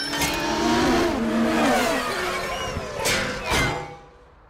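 A racing car's engine revving and passing at speed, its pitch sweeping up and down, with two quick whooshing passes a little after three seconds in; music plays underneath.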